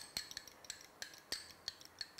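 Metal cutlery clinking against glass mixing bowls: about a dozen light, irregular clinks with a short high ring.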